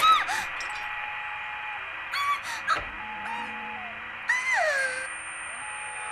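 Cartoon squirrel's squeaky, chattering calls, four short bursts of rising and falling squeaks, over soft background music. A thin, high-pitched steady tone starts near the end.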